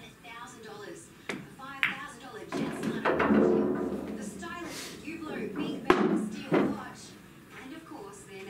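A pool break shot: a sharp crack as the cue strikes the cue ball and the ball hits the rack, then billiard balls knocking against each other and the cushions as they scatter, with two more sharp knocks later on. A loud voice-like sound fills the middle.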